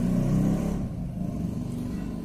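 A low, steady hum that eases slightly after the first second.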